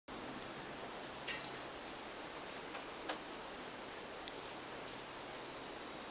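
Steady chorus of insects, a constant high-pitched chirring that holds evenly throughout, with a couple of faint ticks.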